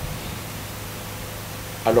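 Steady background hiss with a faint low hum, the noise floor of a microphone recording during a pause in a man's speech; his voice starts again near the end.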